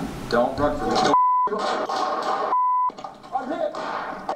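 Two broadcast censor bleeps, each a single steady beep about a third of a second long, roughly a second and a half apart, replacing words in voices from police body-camera audio.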